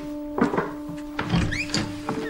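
Background music holding steady notes, over the wooden knocks and thunks of a door being opened, with a thunk about half a second in and a cluster of knocks and a short squeak around a second and a half.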